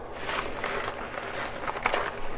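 Rustling and clattering of small items being moved about while searching for a trimming tool, with a run of sharp clicks near the end.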